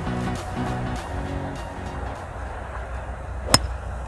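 Background music with a steady beat, and about three and a half seconds in a single sharp click of a golf club striking the ball off the tee.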